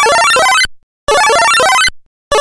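Loud electronic sound effect of rapid stepping beeps, played in two short bursts with dead silence between them: an editor's rewind effect laid over a replay.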